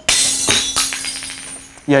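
A small glass item dropped on the shop floor shatters with a sudden loud crash, a second hit about half a second later, and shards tinkling and skittering for over a second as they settle.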